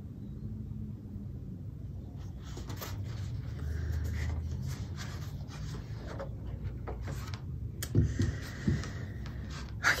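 Rustling and light clicks of a cross-stitch piece in a white plastic stitching frame being handled and set down, over a low steady rumble. A few short, louder low sounds about eight seconds in.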